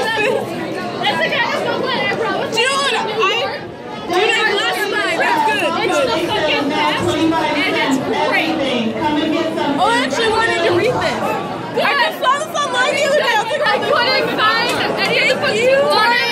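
Several people talking over one another, indistinct chatter and laughter-free conversation with no single clear voice.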